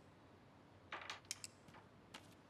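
Near silence, broken about a second in by a brief soft rustle of a sheet of paper being handled, then a few faint light clicks.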